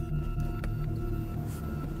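Background music: a steady low drone with a few faint higher tones held above it.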